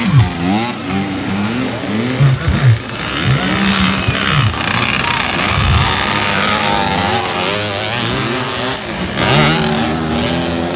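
Several dirt bikes revving and riding past close by, one after another, their engine pitch rising and falling as the riders work the throttle.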